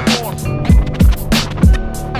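Hip-hop beat: punchy kick and snare drum hits over a looped sampled melody with held and sliding notes.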